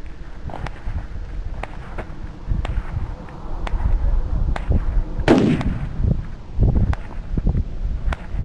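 Gusty wind buffeting the microphone, with faint sharp cracks about a second apart. About five seconds in comes one much louder report: a .30-06 rifle shot at an exploding target, ringing out and fading.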